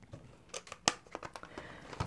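Light clicks and taps of small plastic craft tools being handled and set down on a cutting mat, a tape runner among them, with one sharper click a little under halfway through.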